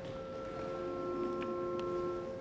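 Church organ holding a chord of steady sustained notes, with new notes entering one after another. A couple of faint clicks sound near the end.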